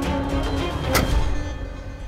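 Dramatic background score: sustained tones with a sharp hit about a second in, fading away near the end.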